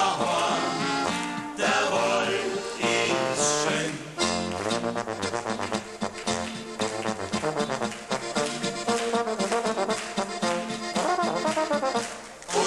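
Alpine folk band playing an instrumental passage between verses: accordion leading, with guitar and a tuba underneath. From about four seconds in the accordion plays fast runs of short repeated notes.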